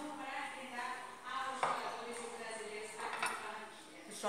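A metal fork clinking against a plate twice, about one and a half and three seconds in, with a voice underneath.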